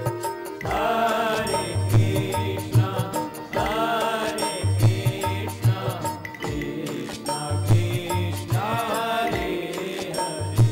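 Devotional chanting sung in repeated phrases over held harmonium tones, with a low drum beat keeping rhythm.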